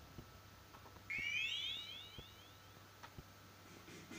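Faint room tone with a few soft clicks. About a second in comes a quick run of some six short, high rising chirps, lasting about a second and a half.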